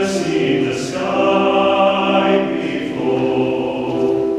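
Mixed choir of men's and women's voices singing a cappella in held, sustained chords, with two sharp hissing 's' consonants in the first second.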